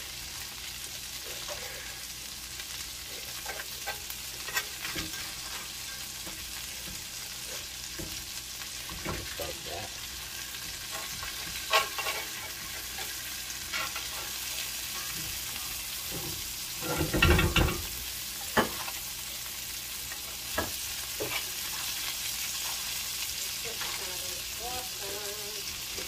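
Butter sizzling steadily in a cast iron skillet around frying striped bass fillets, with scattered clicks and scrapes of a metal spoon against the pan as the fish is basted. A louder clunk comes about two-thirds of the way through.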